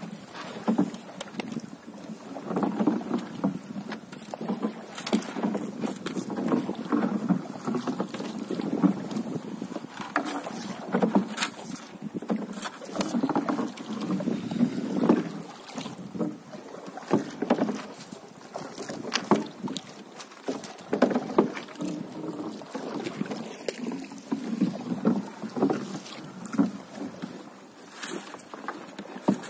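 Wooden paddle strokes in the water from a small boat, a swishing splash about every two seconds, with scattered small knocks and clicks against the hull as a floating gill net is paid out over the side.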